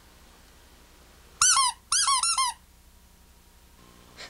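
A rubber caricature-head keychain squeaked in the hand: two short runs of high-pitched squeaks, each squeak rising and falling in pitch, about a second and a half in.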